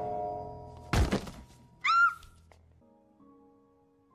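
A metal frying pan ringing out after a hard blow, then a second clanging hit with ringing about a second in, as a man is knocked out cold. A short high squeak that rises and falls follows, then soft held music notes near the end.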